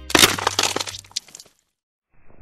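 A crackling, breaking sound effect, like glass shattering, accompanying an animated logo; it dies away about a second and a half in.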